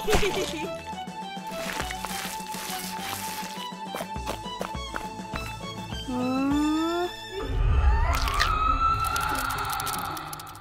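Cartoon score with comic sound effects: a series of quick rising pitch glides about six seconds in, then a low rumble under a long rising tone building toward the end.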